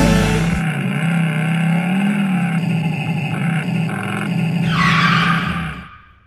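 Electric mini motorcycle riding on asphalt: a steady, slightly wavering hum from its motor, with a louder burst of tyre scrub near the end.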